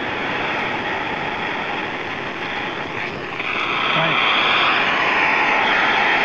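Handheld radio receiver hissing with open static while tuned to the ISS crossband repeater's downlink. The hiss grows brighter and a little louder about halfway through.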